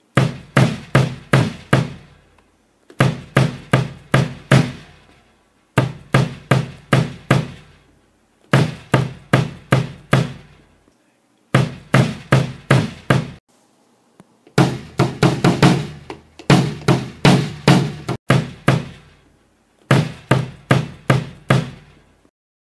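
Mapex Saturn bass drum fitted with an Aquarian Super Kick II head, kicked with a foot pedal in runs of five to seven quick strokes with short pauses between, a thuddy kick-drum sound.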